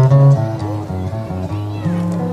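Acoustic guitar playing solo between sung lines, plucking a melody over low bass notes, with a strong bass note near the end.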